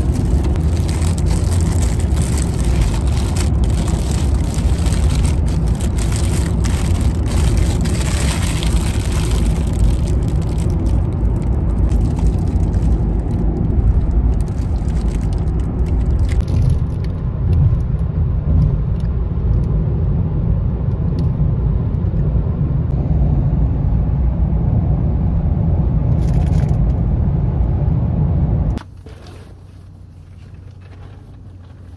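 Car cabin noise while driving: a loud, steady low road rumble, with sharp crackling from a paper food bag being handled over the first ten seconds. The rumble cuts off abruptly near the end.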